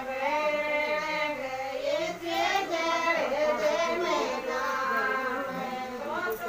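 A high voice singing a devotional song during a Shiva puja, in long held notes that slide up and down in pitch.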